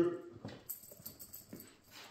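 Faint, irregular taps and clicks of a small puppy's paws on a bare concrete floor as it trots along, mixed with a man's footsteps.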